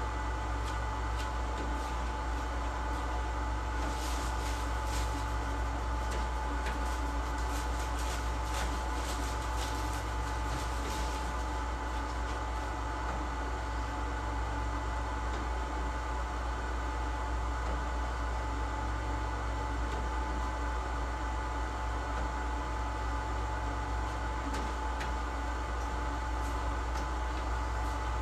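Steady hum of print-shop machinery with a constant thin whine over a deep electrical drone. There are scattered small clicks and rustles of handling between about 4 and 11 seconds in.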